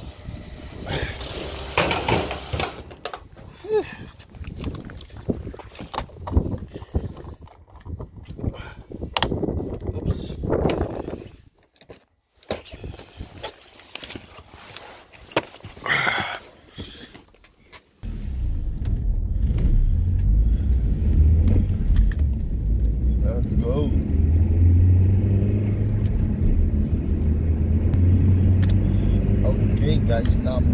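Scattered clicks and knocks while a fuel pump nozzle is handled. About two-thirds of the way in, this gives way suddenly to the steady low rumble of a car driving, heard from inside the cabin.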